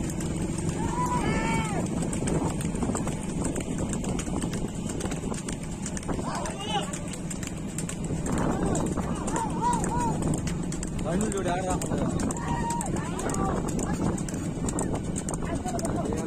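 A pair of racing bulls pulling a flat-bed cart along a paved road, their hooves clopping, while the men on the cart shout calls at them to drive them on.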